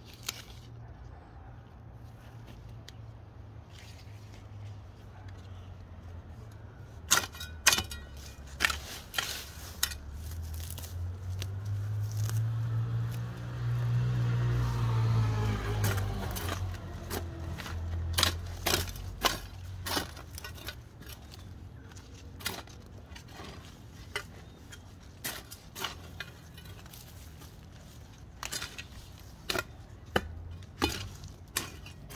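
A metal garden hoe chopping into soil and weeds, with sharp irregular strikes from about a quarter of the way in, in runs of several blows. A passing motor vehicle swells and fades midway through, and is the loudest sound there.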